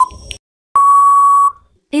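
Quiz countdown timer sound effect: a last short tick, then a steady beep about three quarters of a second long that signals time is up.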